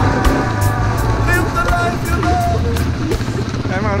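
ATV engine running with a steady low rumble as the quad is ridden along a dirt track.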